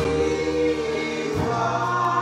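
Gospel singing by a small group of vocalists over accompaniment, swelling in loudly at the start, with the bass moving to a new note about a second and a half in.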